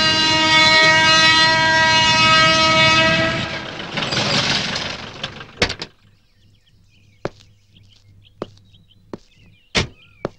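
A train horn sounds one long steady blast lasting about three and a half seconds, followed by a short rush of noise. From about seven seconds in, single footsteps land roughly once a second.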